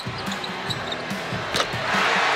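A basketball bouncing on a hardwood court, a few dribbles, over the steady noise of an arena crowd.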